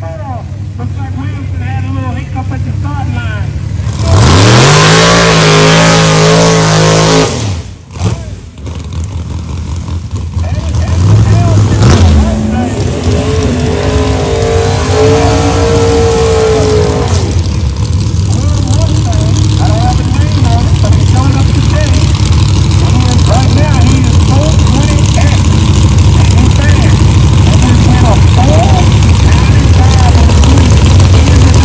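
Drag-racing car engines. One revs up sharply with a rising pitch and holds high and loud for a few seconds before cutting off. A second engine climbs and holds a high rev for several seconds, then settles into a loud, steady rumble.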